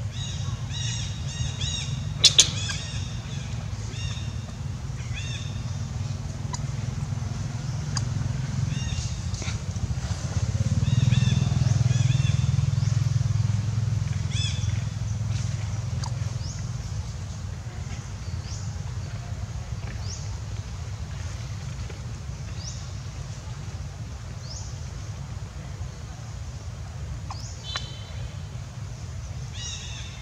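Steady low rumble of a motor vehicle engine that swells about ten seconds in and slowly fades. A sharp click comes near the start, and short high squeaky animal calls come and go throughout.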